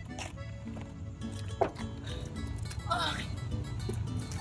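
Quiet background music with steady held notes, and a short high voice sound that rises and falls about three seconds in.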